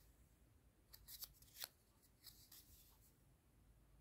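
Near silence, with faint rustles and brief scrapes of a cardboard 2x2 coin holder being handled in the fingers, a few of them about one to two seconds in and again a little later.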